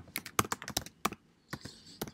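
Typing on a computer keyboard: a quick run of keystrokes for about the first second, then a pause.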